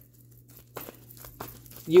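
Tarot deck being shuffled by hand: a few soft papery clicks and rustles over a faint, steady low hum.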